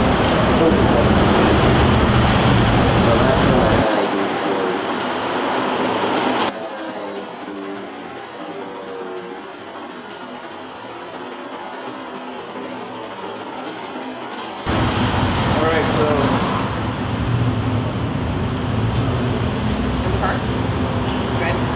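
City street noise with passing traffic and indistinct voices. About four to six seconds in it drops abruptly to a quieter, muffled stretch, and about fifteen seconds in the fuller street sound cuts back in.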